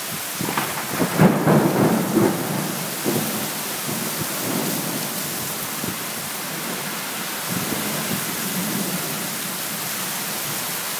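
Thunder rumbling, swelling about a second in and dying away over several seconds, over steady rain.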